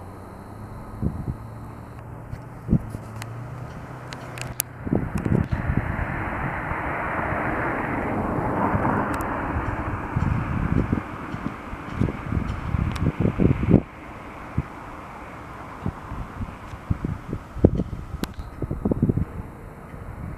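Outdoor street ambience with wind buffeting the microphone in gusty low thumps. Midway a broad noise swell, like passing traffic, builds and then drops away suddenly.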